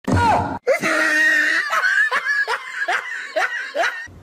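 A person laughing hard, in a run of repeated ha-ha bursts about two or three a second, each falling in pitch.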